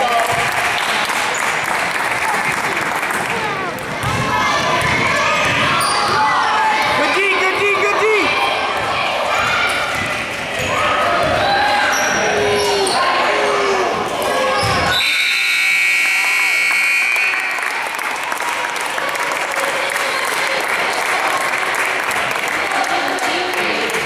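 Gym crowd noise with shouting spectators, a basketball bouncing and shoes on a hardwood court. About fifteen seconds in, a steady scoreboard buzzer sounds for about two and a half seconds.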